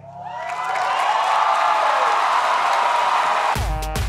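Studio audience cheering and whooping, swelling over the first second. Near the end it is cut off by a short electronic music sting with heavy bass.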